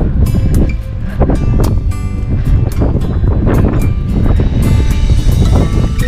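Wind buffeting the microphone in a heavy, uneven low rumble, with background music with a beat playing over it.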